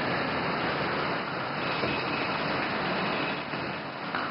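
Steady din of traffic with a crowd's scattered voices underneath.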